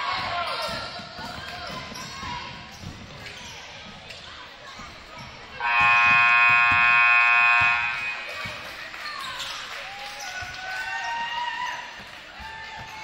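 Gym scoreboard horn sounds one steady blast of about two seconds, beginning about six seconds in: the end-of-period signal as the game clock hits zero. Around it a basketball is dribbled on the hardwood court under voices echoing in the gym.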